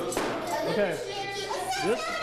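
Children crying out and exclaiming together in reaction to the sour taste of lemon juice.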